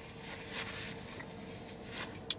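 Quiet pause in a car cabin: a faint rustling hiss over a faint steady hum.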